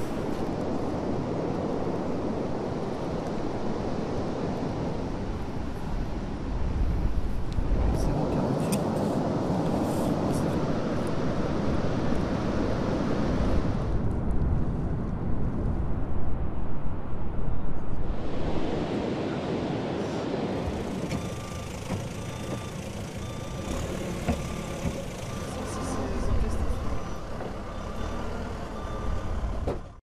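Wind rumbling on the microphone with surf noise on an open beach. From about 21 seconds in, the rumble drops and a short electronic beep repeats at an even pace over vehicle noise.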